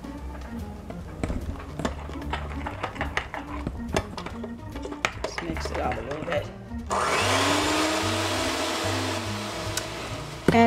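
Electric hand mixer switched on about seven seconds in, its motor spinning up with a short rise in pitch and then running at a steady whine while beating pancake batter in a glass bowl. Before that, light clicks over background music.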